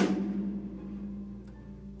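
A drum ringing out after a stroke on the kit: a low, steady drum tone that fades over about a second and a half, with a faint tick about three quarters of the way through.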